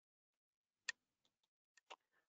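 Near silence with a few short faint clicks: one sharper click about a second in, then several fainter ones near the end.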